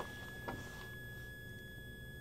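Faint, steady high-pitched whine from a toroidal transformer driven by a pulse generator: the coil sings at the pulse rate it is being driven at. There is one faint click about half a second in.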